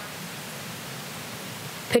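Steady, even hiss with no distinct events, a background noise floor between two stretches of speech; a voice starts right at the end.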